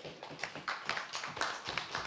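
An audience clapping: many hands beating in an irregular patter.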